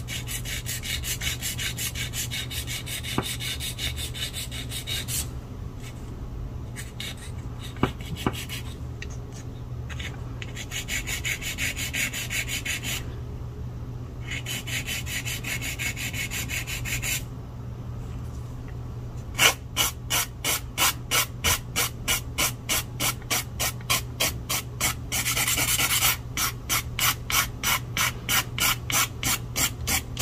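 A 240-grit strip on a metal nail file rasping against a cured rubber-base gel nail on a practice thumb. The strokes come fast and close at first, stop and start with short pauses, then from about twenty seconds in settle into an even back-and-forth of about three strokes a second.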